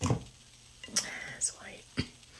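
Quiet whispered, breathy vocal sounds, with a short click at the start and another at the end, as the mirrored metal lid comes off a glass three-wick candle jar.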